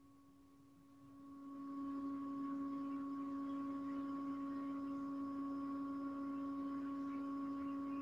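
A steady low tone at a single pitch, with fainter overtones above it. It fades in about a second in and then holds level without change.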